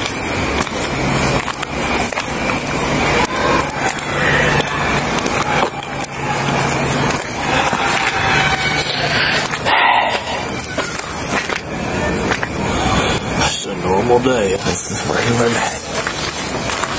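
Police body-worn camera microphone picking up rubbing and handling noise as the officer walks, with muffled, indistinct voices, clearest near the end.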